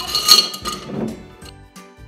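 A hand rummaging in a glass jar of small hard objects such as coins, which clatter and clink against the glass for about the first second, with some ringing.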